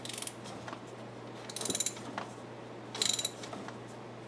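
Hand ratchet wrench clicking in three short bursts about a second and a half apart, the pawl ratcheting on each return swing. It is turning the forcing screw of a bolt-type wheel puller to draw the harmonic balancer off the crankshaft.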